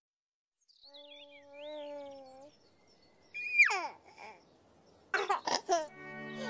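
A baby's voice: cooing, then a loud squeal that drops sharply in pitch, then a few short bursts of giggling near the end.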